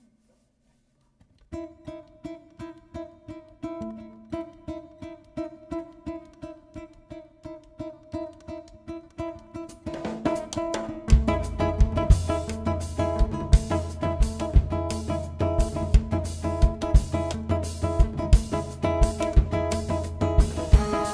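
Venezuelan cuatro strumming a gaita de tambora groove in seven, starting about a second and a half in. About ten seconds in the band joins, and electric bass and drum kit come in strongly a second later.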